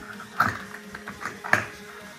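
Metal toggle latches on a plastic storage trunk being snapped open, two sharp clicks about a second apart.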